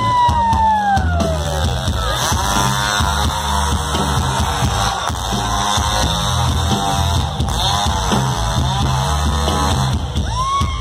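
Hard rock band playing live through a festival PA: heavy drums and bass under a long, high, wavering line with strong vibrato, which slides down in pitch over the first couple of seconds.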